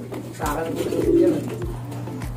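Racing pigeon cooing: one low, warbling coo from about half a second in, fading by about a second and a half.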